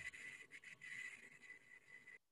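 Near silence: faint open-microphone hiss with a thin, steady high-pitched tone running under it.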